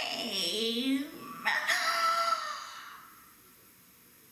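A woman's voice singing a wordless, swooping chant, ending in a long held high note that fades away about three seconds in.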